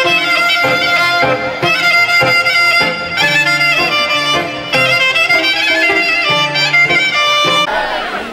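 Live traditional folk music led by a violin, playing a lively melody over a bass line, which stops abruptly near the end.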